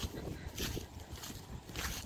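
Wind rumbling and buffeting on a phone's microphone, with a couple of soft rustling steps through dry grass about half a second in and near the end.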